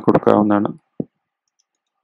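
A man speaking briefly, then a single soft computer-keyboard key click about a second in.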